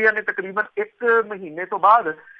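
Speech only: a single voice reading a news item aloud at a steady pace.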